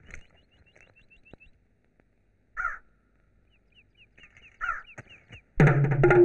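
A crow cawing twice, about two and a half seconds in and again near five seconds, over a run of quick high bird chirps. Loud electric guitar film music comes in just before the end.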